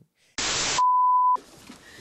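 Edited-in TV-style transition sound effect: a brief burst of static hiss, then a single steady high-pitched beep lasting about half a second, like a test tone.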